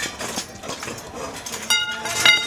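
Street riot noise: scattered sharp knocks and clatter of thrown objects, with a short high ringing tone starting abruptly near the end.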